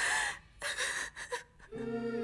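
A woman crying: a few gasping, breathy sobs in quick succession, the first the loudest. Sustained background music tones come in near the end.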